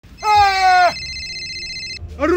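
A short held vocal cry, level then sagging slightly in pitch, lasting under a second. It is followed by a steady high electronic tone for about a second.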